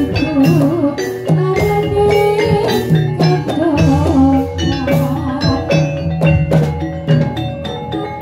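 Javanese gamelan music accompanying a jathilan dance: metallophones ring out a rhythmic melody over regular drum strokes, with a wavering melody line above them.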